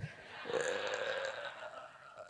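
Faint breathy voice sound, lasting about a second, in a pause between sentences.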